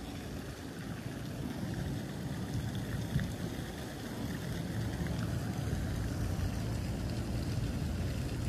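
Outdoor background noise: a steady low rumble with no distinct events, slowly growing a little louder.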